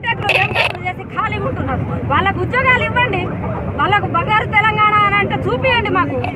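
A woman's raised voice addressing a crowd, over a steady low background rumble.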